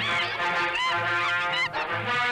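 Music: a steady low pulse under held notes, with a high melody line of short gliding, wavering notes over it.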